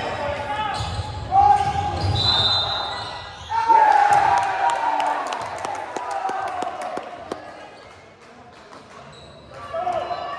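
Players' shouts and cheers ringing round a large gym, with a short steady referee's whistle a couple of seconds in and scattered sharp slaps and claps. The voices die down over the last few seconds.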